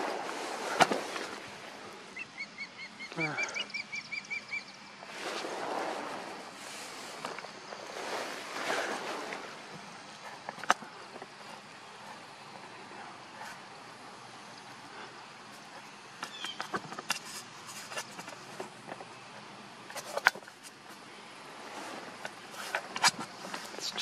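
An osprey gives a rapid series of short, high chirping calls about two seconds in, a territorial call near its nest. Around it are rustling swells and a few sharp clicks.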